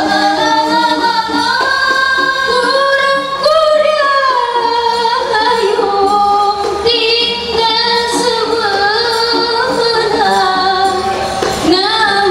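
A women's qasidah group performing: a lead woman sings a gliding Arabic-style melody into a microphone over a steady beat from hand-held rebana frame drums.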